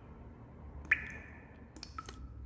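Faint wet mouth clicks from a woman pausing between phrases: a sharp click with a short ringing tone about a second in, and another small click near the end.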